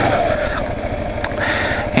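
Kawasaki KLR 650 single-cylinder four-stroke engine running steadily while the motorcycle is ridden, heard from a helmet-mounted camera.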